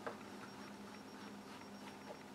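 A paintbrush dabbing acrylic glaze onto a white paper test card, heard as a few faint soft ticks over a low steady room hum.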